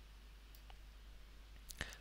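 Near silence: faint room tone with a steady low hum and a few soft, faint clicks, two about half a second in and a small cluster near the end.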